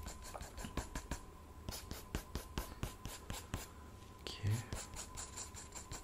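Drawing tool scratching across the paper of a spiral sketchbook in short, irregular strokes, several a second, as a face's outlines are sketched.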